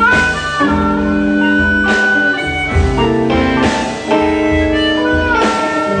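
Blues band playing an instrumental stretch between sung lines: a lead instrument holds long high notes that bend up at the start and again near the end, over guitar chords and a steady low bass.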